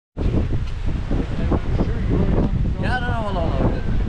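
Wind buffeting the microphone, with one drawn-out, high-pitched cat meow about three seconds in.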